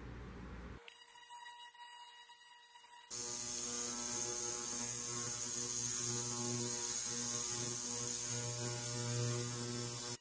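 Digital ultrasonic cleaner starting suddenly about three seconds in and running with a steady electrical hum and a loud hiss over it, its tank holding sockets and a wrench in cleaning solution.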